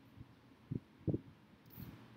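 Quiet room tone broken by a few soft, low thumps in the first second or so, the loudest a little after one second, then a fainter low rustle near the end.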